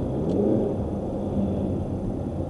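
Car cabin engine and road noise at highway speed. A low engine tone rises over the first half-second and then holds steady.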